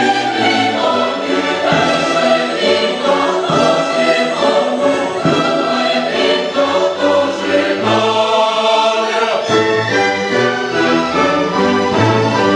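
Mixed choir singing an operatic choral number, accompanied by a symphony orchestra.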